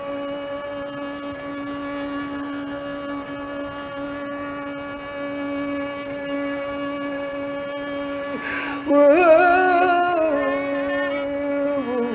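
Carnatic music: a single note held steady for about eight seconds, then a brief break and a wavering, ornamented phrase that settles onto another long held note.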